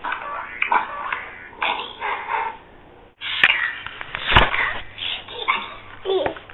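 Short recorded sounds played from a laptop, set off as a toddler presses its keys, broken by a sharp click about four and a half seconds in.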